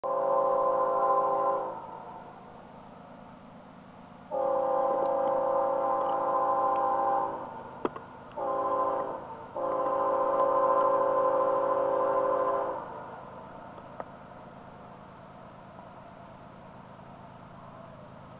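Horn of a GE Evolution Series diesel locomotive leading a freight train, sounding the grade-crossing signal: long, long, short, long. The horn is a chord of several steady tones, and the last blast stops about 13 seconds in.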